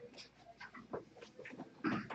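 Faint scattered shuffling and small knocks of a person walking up to the microphone, with a louder bump near the end as she arrives.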